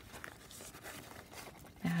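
Faint rustling and handling of a fabric zippered pen case as it is opened out by hand, with a few soft ticks; a woman's voice starts near the end.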